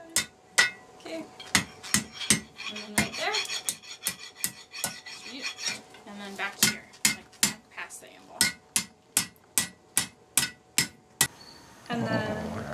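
Hand hammer striking red-hot iron on a steel anvil at a forge: a run of sharp metallic blows, about two to three a second, each with a short ring, stopping about a second before the end.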